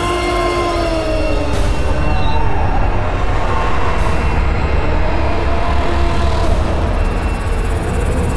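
Eerie suspense score: a steady low rumbling drone with sliding tones in the first couple of seconds and sudden whooshes about a second and a half in, at four seconds and again near six and a half seconds.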